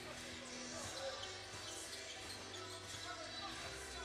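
Basketballs bouncing on a hardwood court in a large, echoing arena during warmups, with arena music playing underneath and scattered voices.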